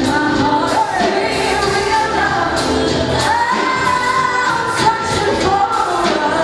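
Live R&B band playing, with electric guitar, keyboards and drum kit under a woman singing lead into a handheld microphone; about three seconds in she holds one long note.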